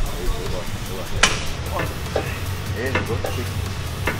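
Background music with gym room noise and a few faint voice fragments; a single sharp clack about a second in.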